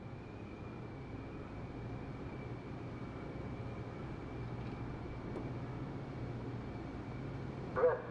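Steady low machinery hum on an offshore drilling rig, with a faint constant high whine over it.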